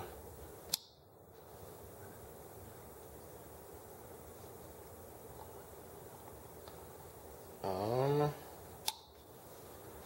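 Two small sharp clicks, about eight seconds apart, from hands handling the parts of a model engine's ignition while a Hall-effect sensor is fitted into its holder, over steady low room hiss. A brief hum from a man's voice, the loudest sound, comes just before the second click.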